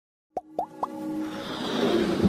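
Animated logo intro sound effects: three quick plops about a quarter second apart, each sweeping upward in pitch and each a little higher than the one before, then a swelling sound that builds toward the end.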